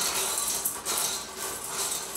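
Small decorative vase-filler gems poured from a plastic bag into a glass bowl vase, a continuous rattling patter of many small pieces striking glass and each other, swelling and easing as the flow varies.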